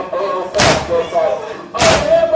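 Crowd of Shia mourners doing matam, beating their chests in unison: two loud slaps about a second and a quarter apart, with voices chanting a lament between the beats.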